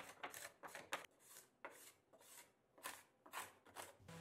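A steel card scraper scraping half-cured glue squeeze-out off an oak tabletop in a series of faint, short strokes, quick at first and more spaced out after the first second.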